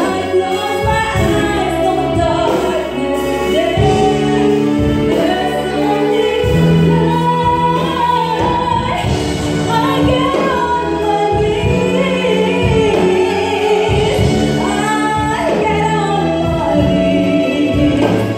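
A woman singing a Christian song into a microphone, accompanied by a live band with electric bass.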